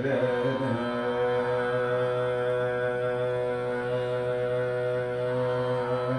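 Male voice singing Carnatic music in raga Sindhubhairavi. The voice slides down during the first second and then holds one long, steady note for about five seconds, with a steady drone underneath.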